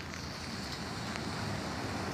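Steady hiss of rain with a low rumble underneath, growing slightly louder toward the end.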